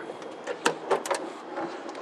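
A few light clicks and knocks as a metal under-body storage-bin door on a converted school bus is handled and opened.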